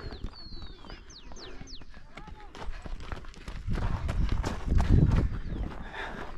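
Quick footsteps crunching on a gravel trail, with wind and handling noise on the camera growing much louder in the second half. A few high, falling whistles sound in the first two seconds.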